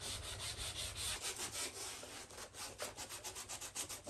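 Hand-sanding an exterior MDF column edge with a small folded piece of sandpaper: quick back-and-forth rubbing strokes, about five or six a second, coming faster in the second half.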